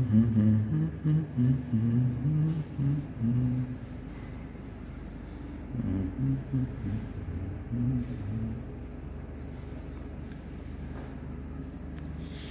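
A low-pitched voice in two short stretches, near the start and again around the middle, over a steady low hum.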